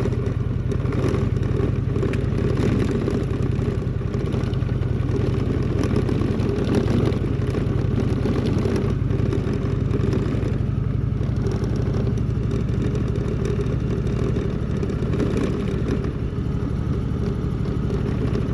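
Indian touring motorcycle's V-twin engine running steadily at low speed on a dirt road, with clatter from the rough unpaved surface.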